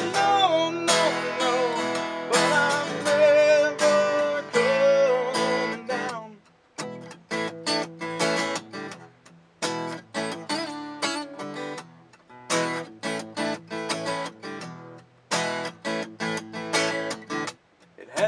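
Acoustic guitar strummed with a man singing over it for about the first six seconds, then the guitar carries on alone in an instrumental break of crisp, evenly repeated strums.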